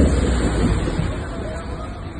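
Water rushing and splashing around a round water-ride boat as it is carried along a channel, with wind rumbling on the microphone. The noise grows gradually quieter.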